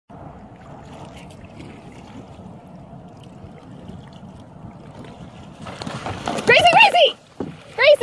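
Water lapping at a kayak's hull with wind on the microphone, steady for about five seconds; then a rushing splash builds near the end as a dog leaps from the bow into the water.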